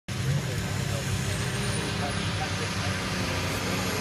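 Pulling tractor's diesel engine running hard and steady under full load during a pull, the Renegade Allis, a modified Allis-Chalmers.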